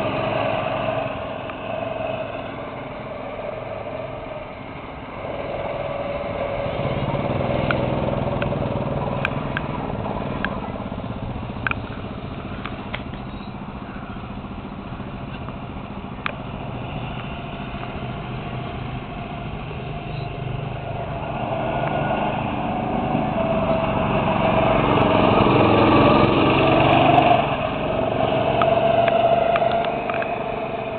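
Go-kart engines running on a track, their pitch rising and falling as the karts accelerate and pass. The engines grow louder near the end as karts come close, then drop off suddenly, with a few sharp clicks in the middle.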